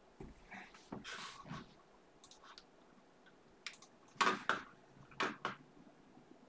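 Scattered clicks and light rustling of things being handled at a desk. The loudest are a few sharp clicks about four to five and a half seconds in.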